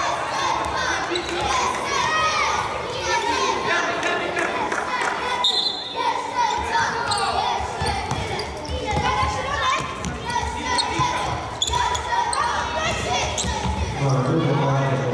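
Futsal ball being kicked and bouncing on a sports-hall court during play, with overlapping shouts from young players and spectators, echoing in the large hall.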